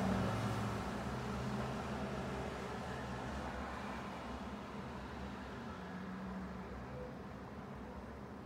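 A low, steady mechanical hum and rumble that slowly fades away.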